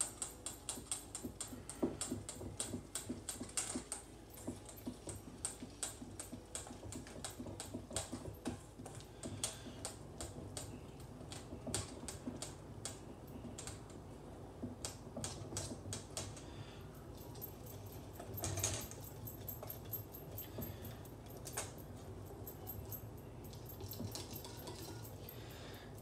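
Wire whisk clicking rapidly against a stainless steel bowl as a thick egg-white and coconut-flour batter is whisked; the strokes grow sparser about two-thirds of the way through.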